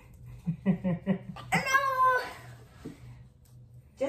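A child's high-pitched, drawn-out excited cry that falls slightly in pitch, after a few short vocal sounds.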